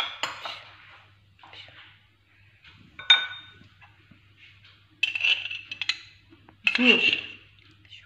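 Kitchen spoons knocking and scraping against a small ceramic bowl as tomato paste is spooned in, with one sharp ringing clink about three seconds in and more clatter over the last three seconds.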